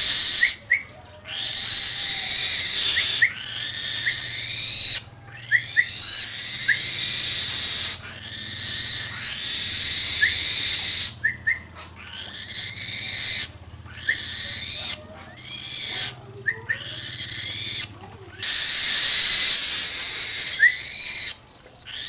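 A falcon calling repeatedly with high, harsh calls that rise at the start, mixed with short sharp rising whistle notes, as it is called in to be fed.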